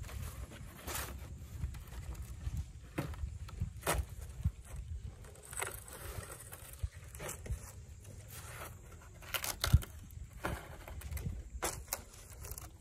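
Dry sheets of sun-dried peeled wood veneer knocking and scraping against each other as they are gathered and stacked by hand. The handling comes in scattered short clatters, with one sharper knock late on, over a low steady rumble.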